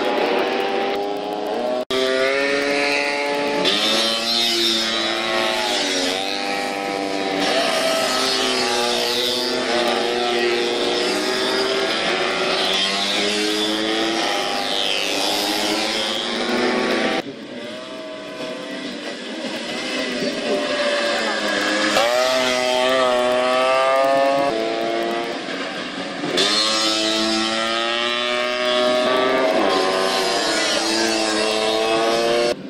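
Modified two-stroke Vespa scooter engines racing, often several at once, running hard with their pitch repeatedly rising and falling as the riders accelerate and ease off. The sound changes abruptly a few times as one shot cuts to the next.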